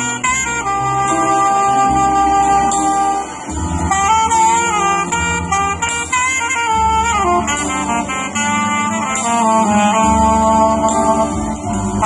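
Live band of saxophone, electronic keyboard and drum kit playing a Bollywood tune. The saxophone carries the melody with long held notes and slides over keyboard and drum accompaniment.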